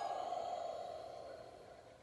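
A man's long, slow exhale, a soft breathy hiss that fades away gradually over about two seconds.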